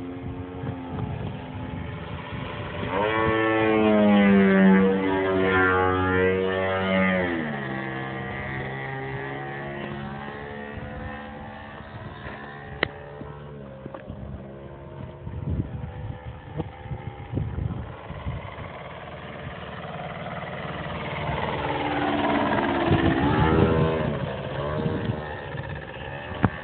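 Engine of a 2.5 m radio-controlled Extra 330S aerobatic model plane in flight. It runs up to higher revs about three seconds in, drops back sharply near eight seconds, and grows louder again with pitch changes a few seconds before the end.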